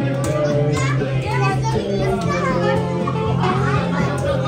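Children's chatter and calls over background music with a steady low bass.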